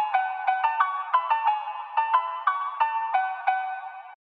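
Solo electronic melody from a phonk track's outro, with no bass or drums: quick, high, sharply struck notes, several a second, fading out as the track ends.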